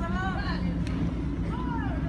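A low steady mechanical hum, like an engine running nearby, with faint distant voices rising and falling twice over it.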